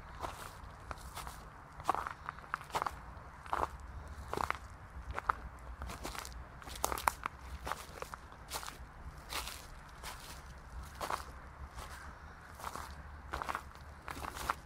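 A person's footsteps crunching on an outdoor path in slow, uneven steps, about one a second, over a steady low rumble.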